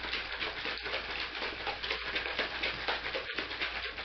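Thin vinegar-based barbecue sauce sloshing in a capped plastic bottle shaken hard by hand in a fast, steady rhythm, mixing the salt, pepper, pepper flakes and sugar into the vinegar.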